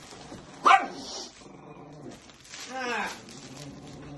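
A dog making noises while playing with a plush toy: a short, loud bark-like sound just under a second in, low growling, and a longer cry that falls in pitch around three seconds in.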